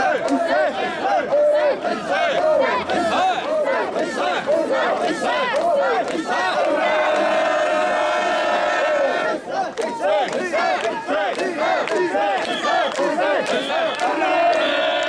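Crowd of mikoshi bearers chanting in rhythm as they carry a portable shrine, many voices shouting the same short call over and over. About seven seconds in, a long steady held note sounds over the chant for two or three seconds.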